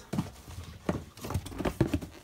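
Shoes being rummaged through by hand in a pile: about five irregular hard knocks as they bump against each other.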